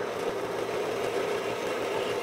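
Harbor Freight 1 HP 4 x 6 in. horizontal/vertical metal-cutting band saw running, its motor and moving blade giving a steady hum with a hiss over it.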